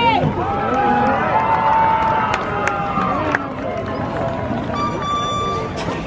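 Crowd of spectators in stadium bleachers cheering and calling out, several voices overlapping. A short, steady high tone sounds about five seconds in.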